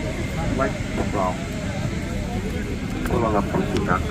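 Steady airliner cabin noise, a constant low rushing hum, under passengers' voices talking in the cabin about a second in and again near the end.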